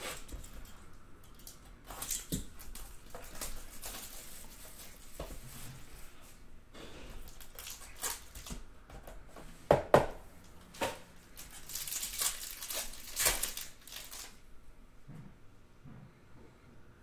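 Plastic wrap being torn off a sealed trading-card box and a foil card pack being torn open, with irregular crinkling and rustling. There are a couple of sharper snaps about ten seconds in, and the loudest crinkling comes a little after that.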